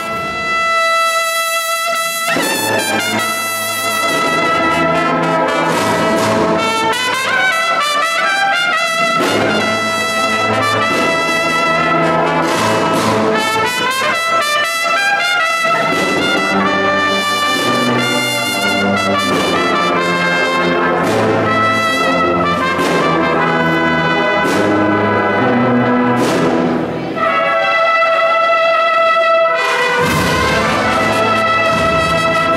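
A Spanish cofradía band's brass section (trumpets, trombones and tubas) playing held chords, with the low brass joining about two seconds in and a short break before a final sustained chord near the end. The stone church adds a long echo.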